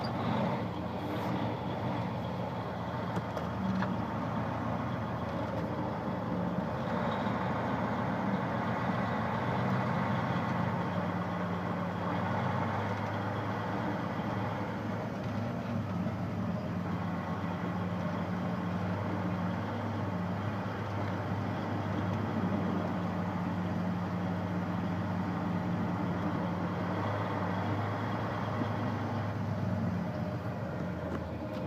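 Truck engine running at low speed with a steady low hum and road noise, heard from inside the cab.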